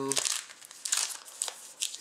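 Foil wrapper of a 2010/11 Zenith hockey card pack crinkling in the fingers in a string of short rustles as it is handled and worked open.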